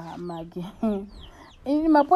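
Domestic chickens clucking in short calls, with small birds chirping high and thin, after a woman's brief closed-mouth 'mm' at the start.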